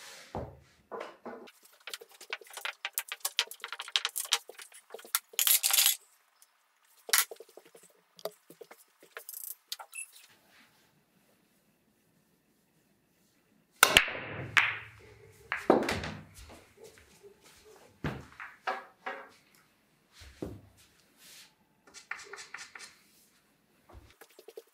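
Pool balls clacking together as they are gathered and racked. After a few quiet seconds comes a loud break shot about 14 seconds in: the cue strikes and the balls scatter, knocking off each other and the cushions, with a few more knocks over the next several seconds.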